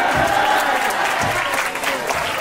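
Audience clapping and cheering at a rap battle as a verse is called to an end, with a voice held over the applause.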